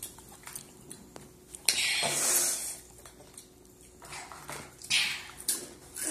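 Crunchy spicy corn snacks (Hot Cheetos and Takis) being chewed, with light clicks of fingers picking through plastic food trays. There are a few short bursts of crunching; the loudest comes about two seconds in.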